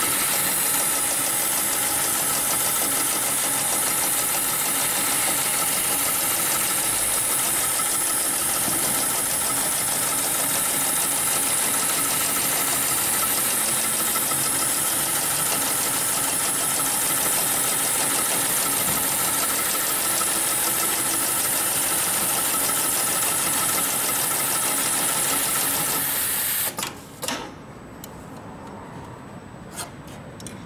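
HighTex 71008 automatic heavy-duty pattern sewing machine running steadily at speed, stitching a programmed pattern through thick multi-ply harness webbing. It stops about 26 seconds in, and a few clicks follow near the end as the work clamp is handled.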